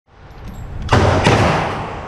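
Two gunshots from a 7.5-inch short-barreled rifle fitted with a muzzle device, about a third of a second apart, each ringing out in the long echo of an indoor range.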